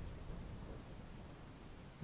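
Faint steady rain with a low rumble of thunder beneath it, a storm ambience that grows slightly quieter across the two seconds.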